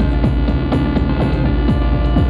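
Electronic music played live through a PA: a steady kick drum about twice a second, a short high hiss between each kick, and sustained synth tones over a low drone.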